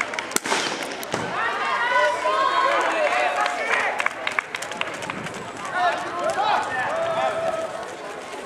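A starting pistol fires, a sharp crack a moment in, with a second crack soon after. Then voices shout and cheer as the distance race gets under way.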